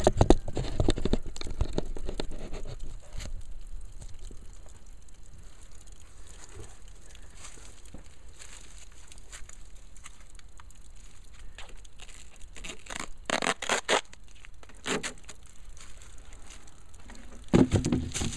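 Plastic gallon jugs and a duct-tape band being handled: irregular rustling and crinkling, busiest at first, with a few louder crinkles near the end as the tape is pulled loose.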